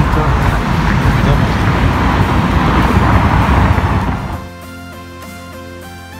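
Loud, steady outdoor rushing noise with a deep rumble, which cuts off about four seconds in as background music with held notes begins.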